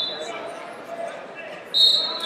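Referee's whistle blasts in a large hall: one tails off just after the start, and a louder, shrill one cuts in sharply near the end. Background crowd chatter runs throughout.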